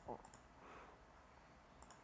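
Faint clicks of a computer mouse and keyboard: a few near the start and a quick pair near the end.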